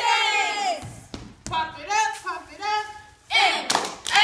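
Cheerleaders shouting a cheer together in drawn-out, chanted syllables, with a few sharp claps or stomps on the gym floor between phrases.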